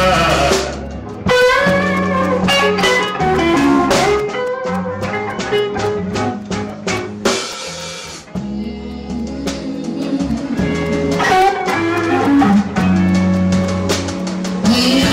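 Live slow blues band playing an instrumental passage between vocal lines: lead guitar over bass and drums, from a 1980 cassette tape recording.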